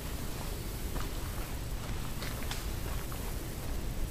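Steady hiss and low rumble of a handheld camera's background noise, with a few faint short clicks scattered through.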